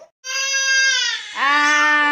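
Two long, loud wailing cries: the first high and sliding slightly down, the second lower and held steady.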